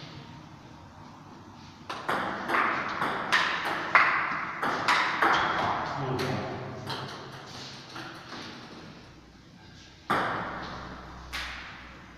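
A table tennis ball clicking sharply back and forth off rackets and the table in a fast rally from about two seconds in to about seven, echoing in the hall. Near the end come a couple of single ball bounces as the next serve is readied.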